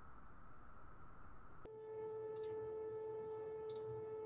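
Faint, steady electronic tones, a background hum with no speech. About one and a half seconds in, the tone changes abruptly to a lower, steadier hum, and a couple of faint clicks come later.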